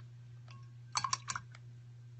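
A quick run of about four light clicks and taps about a second in, from a small painted canvas being handled and set down on the worktable, after a single faint tick. A steady low hum sits underneath.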